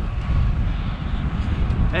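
Wind buffeting the microphone on a moving bicycle, a steady low rumble with a fainter hiss above it.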